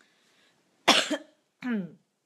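A woman coughs once, sharply, about a second in, then makes a short voiced sound that falls in pitch.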